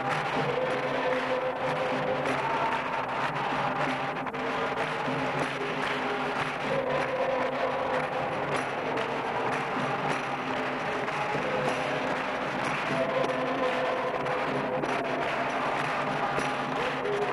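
Capoeira roda music: berimbaus with a chorus of voices singing and hands clapping along.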